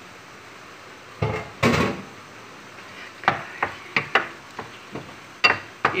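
Wooden spoon stirring chicken pieces in a stainless steel frying pan: two scraping strokes a little over a second in, then a string of short sharp knocks as the spoon hits the pan.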